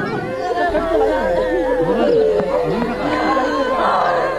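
Several women crying and wailing in grief, their voices overlapping, one holding a long high-pitched wail through the middle of it.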